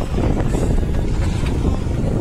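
Wind buffeting the microphone over the steady running and road noise of motor scooters riding along a road, with a continuous low rumble.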